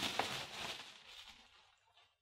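Faint rustling and handling noise that fades out about a second in, followed by near silence.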